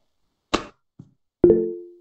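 A sharp click and a soft knock, then a short low chime that starts suddenly and fades out within about half a second: a video-call notification sound.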